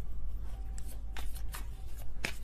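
Tarot cards being shuffled by hand, with a couple of short papery rustles a little over a second in, over a low steady hum.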